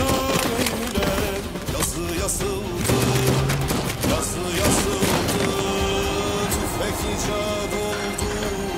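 Background music with a held melody, with many sharp pistol gunshots from a shootout scattered through it.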